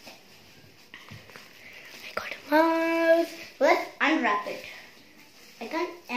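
A young boy's voice with no clear words: one steady, held sung note about halfway through, followed by a few quick babbled syllables, and more babble near the end. Two light knocks come in the first couple of seconds.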